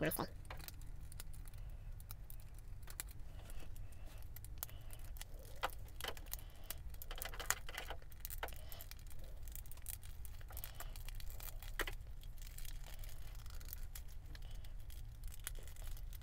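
Small plastic clicks and rattles, scattered and irregular, as the panels of a Wei Jiang M03 Battle Hornet transforming robot toy are pushed and snapped into their tabs by hand, over a low steady hum.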